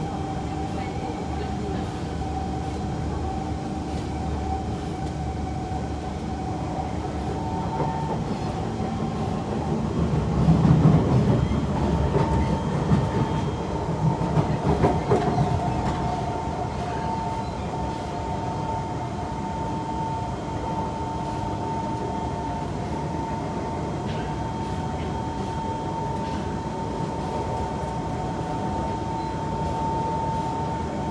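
Cabin of a Kawasaki C151 MRT train running on elevated track: steady running noise with a whine that holds its pitch. The noise grows louder and rougher for about six seconds in the middle.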